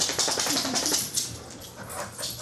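A dog's claws clicking rapidly on a tile floor as it turns and trots away, with a short faint whine about half a second in. The clicking is densest in the first second, then fades.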